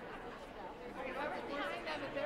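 Audience chatter in an auditorium: many voices talking at once, none standing out.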